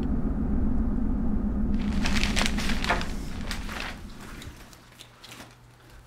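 Low rumble of a car driving, heard from inside the vehicle, fading out about four seconds in, with crackling and crinkling from about two seconds in. Near the end, faint rustling and small clicks of hands rummaging in a canvas bag.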